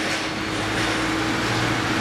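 Steady mechanical running noise: a constant low hum under a rushing hiss, typical of an engine or machinery running at a loading dock.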